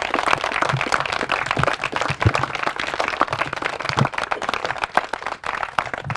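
A small group of people applauding, many hands clapping densely, then thinning out near the end.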